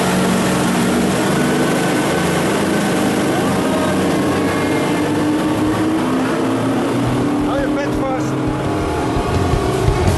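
Twin Yamaha outboard motors running steadily at speed, with the rush of the wake and wind over the microphone.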